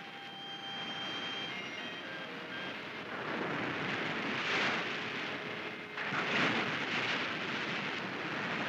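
Surf surging into a rock pool and washing back off a rock ledge: a broad rushing wash that swells in two long rushes, the first peaking about halfway through and the second starting about six seconds in.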